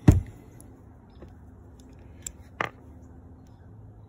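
Hand tools being handled on a workbench: a sharp knock right at the start, then two light clicks about two and a half seconds in, over a low steady hum.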